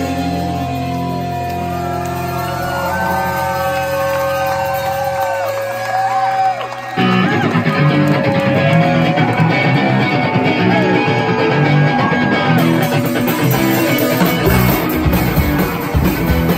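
Live rock band on electric guitar, bass guitar and drums. It opens with a guitar line of bent, sliding notes over held bass notes, and the full band crashes in louder about seven seconds in.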